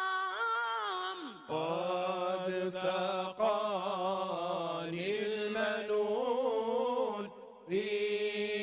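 Islamic religious chanting (an ibtihal): a sung voice holding long, ornamented notes. After a short break about a second and a half in, it carries on at a lower pitch, and it pauses briefly near the end.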